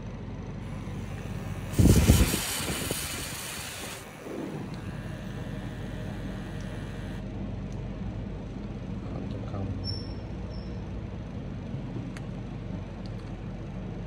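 A person blowing hard into the mouthpiece of a JY-3 breathalyzer for a breath alcohol test, a loud rush of breath of about two seconds starting about two seconds in. A faint steady tone follows for a couple of seconds.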